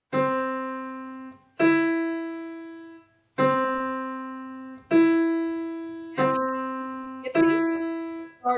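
Single notes played slowly one at a time on a digital piano, six in all. They alternate between middle C and the E a third above it, a skip over one key. Each note is struck firmly and left ringing for about a second and a half as it fades.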